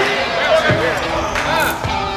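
Basketball bouncing on a hardwood gym floor: two thumps, one under a second in and one near the end.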